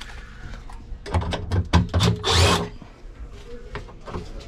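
Cordless drill-driver running in a few short bursts about a second in, backing out screws, mixed with clicks and knocks of metal parts being handled.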